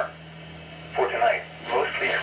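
NOAA Weather Radio receiver's loudspeaker playing the National Weather Service's computer-synthesized voice reading the forecast, over a steady low hum.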